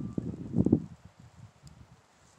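A sheep bleating once, a low, pulsing baa lasting under a second at the start.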